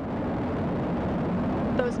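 Steady low rumble of the Falcon 9 rocket's nine Merlin engines at full thrust during ascent. A voice starts near the end.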